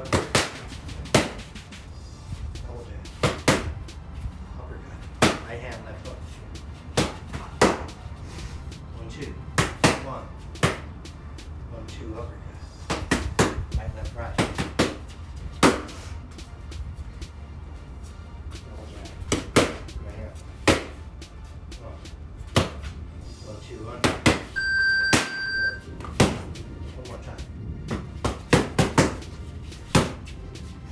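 1v1 Pro Trainer Elite boxing gloves punching leather focus mitts: sharp smacks at irregular times, some single and some in quick combinations of two to four. A single electronic beep sounds for about a second some 25 seconds in.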